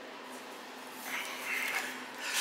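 Steady low background hum of a garage space heater, with a faint rustle about a second in.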